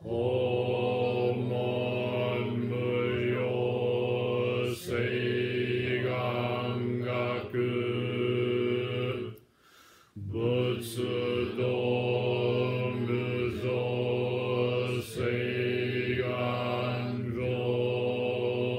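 Low-pitched Buddhist chanting on a single sustained monotone, in two long drawn-out phrases with a short pause for breath about nine and a half seconds in.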